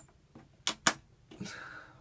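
Two sharp plastic clicks about a fifth of a second apart, a little under a second in: a tripped circuit breaker in a household consumer unit being flicked back on to restore power.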